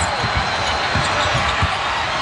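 Arena crowd noise, with a basketball being dribbled on a hardwood court in irregular thumps.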